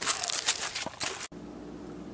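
Crunching and rustling of footsteps through dry leaves and grass, which cuts off abruptly about a second and a half in. What follows is quiet room tone with a faint steady hum.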